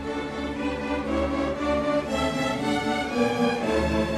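Junior high string orchestra playing: violins and a double bass bowing held notes together over a bass line, getting a little louder toward the end.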